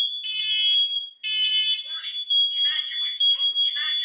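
Fire alarm going off again and again: a steady high-pitched tone runs throughout, with a horn blaring in pulses about once a second that stop about halfway through.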